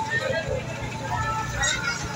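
Busy street noise: indistinct voices of passers-by over a low rumble of traffic.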